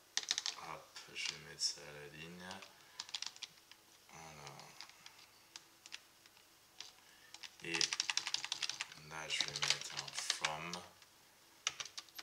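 Typing on a computer keyboard in quick runs of keystrokes, with a lull near the middle and a dense flurry in the second half.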